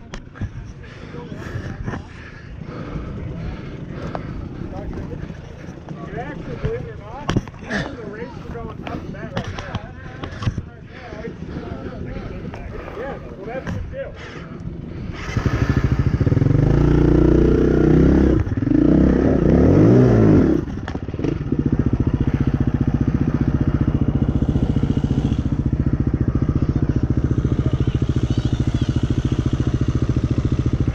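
KTM enduro dirt bike engine starting about halfway through, revved up and down for several seconds, then settling into a steady idle. Before it starts there are only scattered clicks and faint voices.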